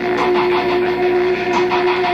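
Background music from a TV special's soundtrack: one long held note with a faint pulse over it about four times a second.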